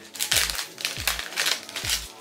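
Plastic jewelry packaging crinkling as it is opened and handled, in about five short rustling bursts.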